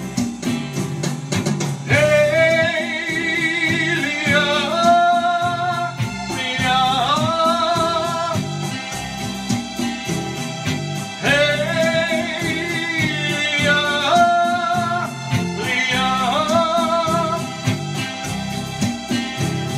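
A man singing long wordless falsetto phrases in a yodel-like style, with a wavering vibrato, over a strummed acoustic guitar. There are four phrases, each sliding up into a held high note.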